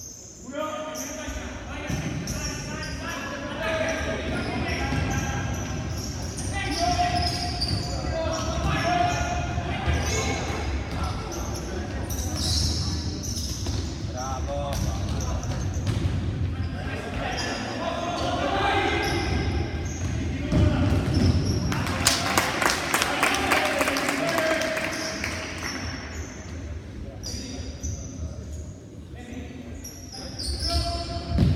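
Futsal ball being kicked and bouncing on a wooden indoor court, with players' shouts and calls echoing around a large sports hall. A short burst of rapid sharp taps comes a little past two thirds of the way through.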